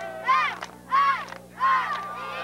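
High-pitched girls' voices chanting a cheer in unison, three shouted syllables about two-thirds of a second apart, over a faint steady hum.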